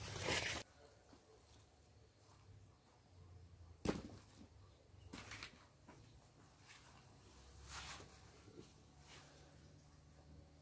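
Faint handling sounds during an eggplant harvest: a brief rustle of leaves at the start, then one sharp click about four seconds in, with a few softer rustles after it.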